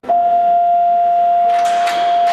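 Electronic school bell signal: one steady, unwavering pure tone held throughout.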